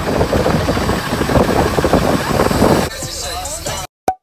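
Indistinct chatter over a steady low rumble. It drops in level about three seconds in and cuts off abruptly just before the end.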